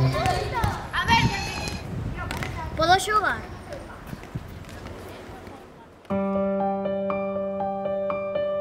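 Children calling out and shouting as they play a ball game outdoors, fading off over the first few seconds. About six seconds in, piano music starts with slow, held notes.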